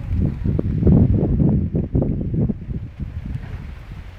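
Wind buffeting the phone's microphone: a loud, rough, low rumble that gusts hardest in the first half and eases toward the end.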